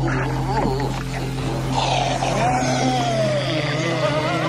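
Horror film soundtrack: a low, steady music drone under a long wavering cry that slowly falls in pitch in the second half.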